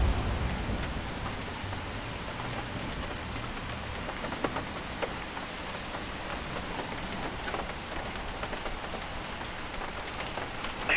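Steady rain falling, an even hiss, with a few louder single drops ticking now and then.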